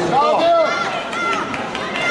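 Indistinct voices talking and calling out in a large hall, over a low background of chatter.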